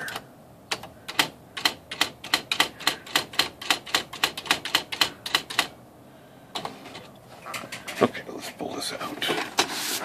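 Smith Corona SD 680 electronic typewriter printing a line of letters in 15 pitch with its print wheel: a fast, even run of sharp strikes, about six a second, lasting about five seconds. After a short pause come a few scattered mechanical clicks and a whirring.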